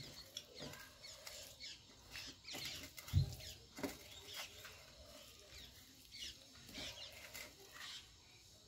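Close-up eating sounds: fingers mixing and squishing rice with curry on a steel plate, with chewing and small wet mouth clicks. A single dull low thump about three seconds in.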